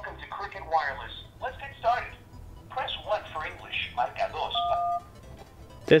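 A recorded voice prompt from a carrier's 611 customer-service line plays through the Ulefone Be Touch smartphone's loudspeaker, thin and telephone-band. Near the end comes one short two-note keypad tone, the DTMF tone of the "1" key pressed to choose a menu option.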